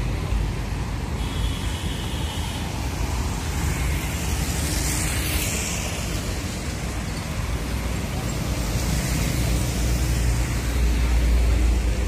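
Diesel engine of a coach bus running as the bus moves slowly forward, with roadside traffic. The rumble grows louder near the end as the coach comes closer, and there is a brief hiss about five seconds in.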